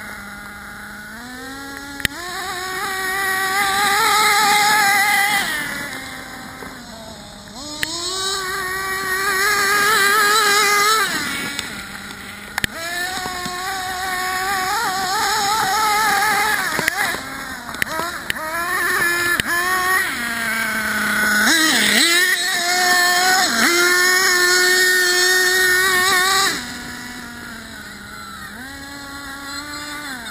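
Hobao Hyper 7 nitro RC buggy's .21 two-stroke glow engine, heard close from a camera on the car, revving up in about five throttle bursts and dropping back to idle between them. It settles into a steady idle for the last few seconds.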